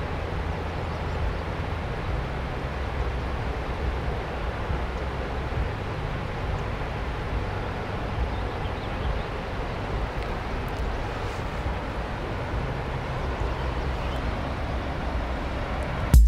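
Heavy water release from Deer Creek Dam's outlet: a steady rush of water with a deep rumble as it violently gushes out and churns into the river below.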